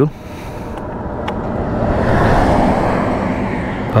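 A vehicle passing on the highway: tyre and engine noise swells over about two seconds, peaks a little past the middle, then begins to ease.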